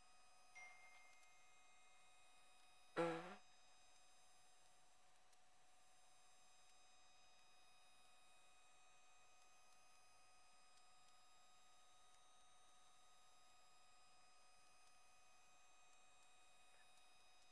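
Near silence: faint room tone with a steady faint hum. About three seconds in, one brief 'mm' from a person's voice falls in pitch.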